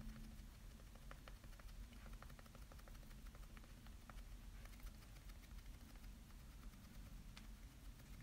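Near silence, with faint soft ticks in quick runs from a makeup sponge dabbing foundation onto the face to blend it.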